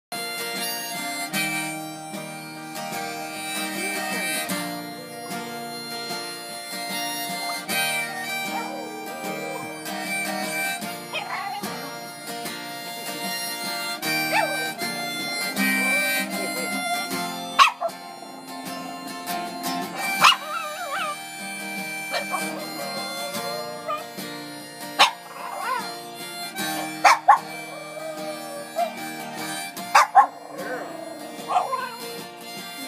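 Harmonica played over acoustic guitar while a small dog howls along to it, its voice wavering and sliding in pitch against the held notes. In the second half the dog lets out a few sudden, louder cries.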